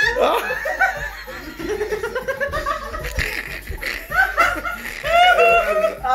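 A group of people laughing together, several voices overlapping, loudest near the start and again near the end.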